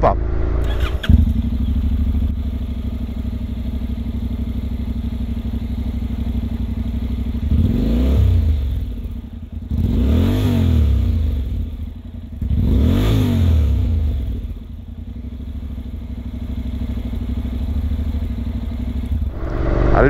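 Honda NC700X's 670 cc parallel-twin idling through an aftermarket Akrapovic exhaust, revved three times in quick succession and settling back to idle between and after the revs.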